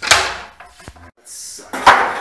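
Two loud knocks, one right at the start and one just before the end, with a short hiss between them.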